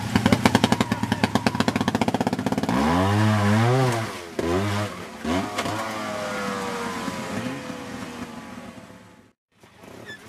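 Trials motorcycle engine chugging at low revs with a rapid even beat, then a few sharp throttle blips about three seconds in with the revs swinging up and down, followed by a long fall in pitch as the revs die away. The sound cuts out briefly near the end.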